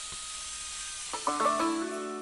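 Steady hiss, then banjo music starts about a second in with plucked notes.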